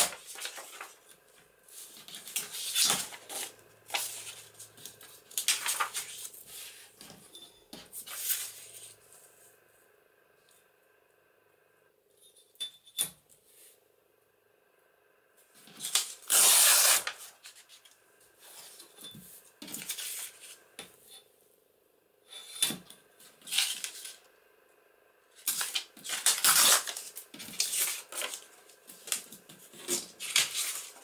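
Paper being torn by hand against a metal deckle-edge ruler, in a series of rips and rustles, the longest and loudest a little past halfway after a quiet spell of a few seconds. Between tears the metal ruler clicks and clinks as it is set down and shifted on the cutting mat.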